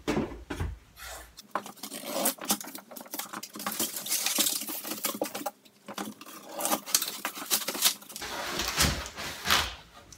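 A cardboard shipping box being opened by hand: a close run of crackles, scrapes and rustles as the tape along the seam gives and the flaps are pulled back, with a few duller knocks of the box at the start and near the end.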